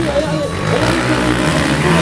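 Sport quad (ATV) engine running under throttle as the quad rides past, with an announcer's voice over a PA system on top.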